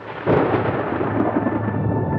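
Sound-effect thunder for a studio logo intro: a heavy rumble that swells out of silence and reaches full strength about a quarter second in, with a steady tone running under it.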